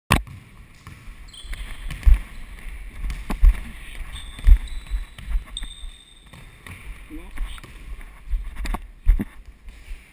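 A basketball bouncing on a hardwood gym floor during play, with heavy thuds about two, three and a half, four and a half and nine seconds in, and brief high squeaks.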